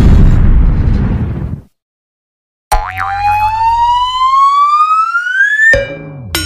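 Explosion sound effect rumbling and dying away about a second and a half in. After a second of silence, a whistle-like tone rises steadily in pitch for about three seconds and cuts off near the end.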